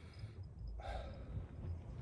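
A man sighing: a soft, long breath out that begins about halfway in, over a faint low rumble.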